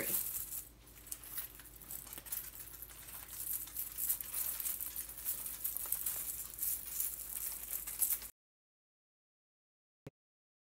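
Ball garland rattling and clicking as it is wound around an artificial tree, with the plastic branches rustling against it. The sound cuts off abruptly near the end.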